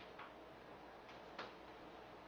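Near silence with a faint hiss, broken by a few short, faint clicks; the clearest comes about one and a half seconds in.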